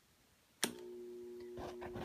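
A sharp click about half a second in as the electrode's power supply is switched on, then a steady electrical hum on two low pitches as the electrode is energised in the powder.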